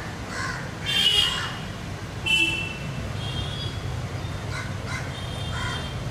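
Crows cawing: two loud caws about one and two seconds in, then several fainter calls, over a steady low background rumble.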